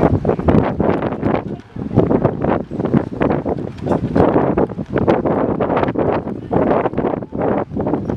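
Wind buffeting the microphone in uneven gusts, a loud rushing noise that surges and drops every second or so.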